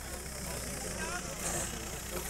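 Scattered voices of an outdoor crowd chatting, with a steady low rumble underneath.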